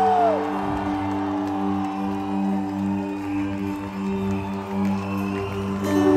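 Live band playing a soft, sustained chord, heard from within the audience; a held melody note slides down and stops just after the start.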